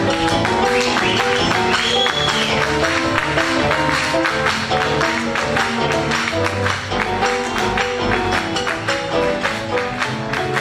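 Live band playing Latin American popular music, with piano, bandoneón, acoustic guitar, double bass and drums under a steady percussive beat.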